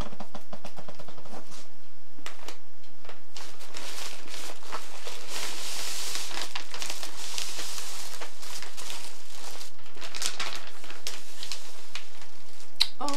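Plastic mailing bag rustling and crinkling as a parcel is opened by hand and its contents are slid out, with many small crackles, busiest in the middle.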